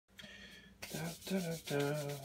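A man's voice making three or four short wordless vocal sounds, starting about a second in, after a moment of faint steady room noise.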